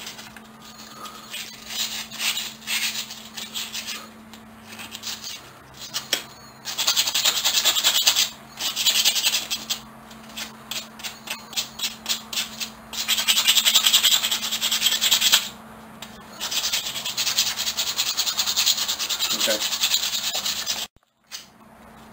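Coarse sandpaper rubbed by hand over rusty steel pliers, scrubbing off surface rust in quick back-and-forth strokes. The scratching is light and broken at first, then runs in spells of a few seconds each with short pauses from about a third of the way in.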